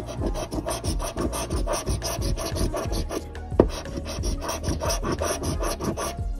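A coin scraping the silver scratch-off coating from a paper lottery ticket in quick, repeated back-and-forth strokes, with one harder scrape a little past halfway.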